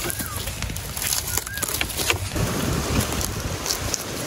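Dry burnt leaves, ash and bamboo debris crackling and rustling under gloved hands working among bamboo stems, with wind rumbling on the microphone. A bird gives two short calls, once at the very start and again about a second and a half in.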